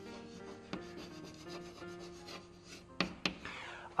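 Chalk scraping on a chalkboard as words are written, with a few sharp taps of the chalk, the loudest about three seconds in.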